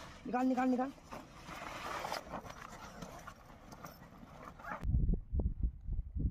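A short shout, then rustling and scuffing of a bag being grabbed and feet moving over dry grass. About five seconds in, the sound changes abruptly to irregular low thumps.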